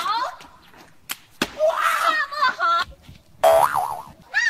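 Cartoon-style 'boing' sound effect near the end, a loud wobbling tone that swoops up and down in pitch. Before it come two sharp clicks and a short burst of voice.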